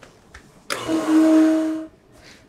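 An electric motor running for just over a second, a steady hum with a hiss over it, starting abruptly and cutting off.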